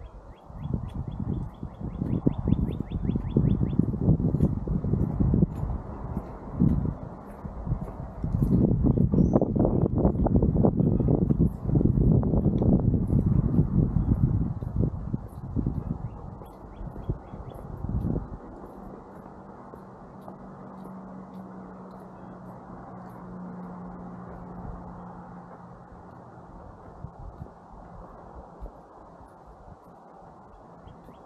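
Wind rumbling on the microphone for about the first sixteen seconds, then dying down. About a second in, a bird gives a short rapid trill, and faint bird chirps come and go throughout; a faint steady hum is left in the quieter last part.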